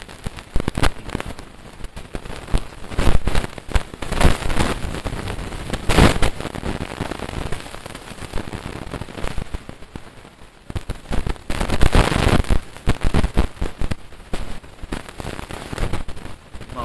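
Loud, irregular crackling and rustling noise from the recording microphone, coming in surges of rapid clicks, with a man's speech buried beneath it.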